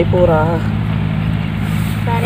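A boy's voice speaks a short phrase at the very start over a steady low rumble that carries on unchanged.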